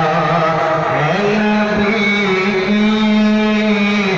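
Male voice singing an Urdu naat, drawing out long held notes. The pitch steps up a little about a second in and is then held steady.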